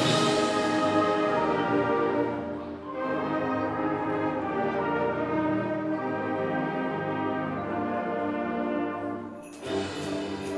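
Middle school concert band playing sustained, brass-led chords. A cymbal crash rings off at the start, and the music drops back briefly about three seconds in and again near the end before the next phrase.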